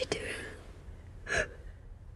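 A girl gasps once, a short sharp intake of breath about a second and a half in, over a faint steady low rumble.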